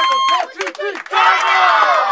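A team of young boys shouting a cheer together in a huddle: high children's voices, one held call at the start, then the whole group shouting at once from about a second in.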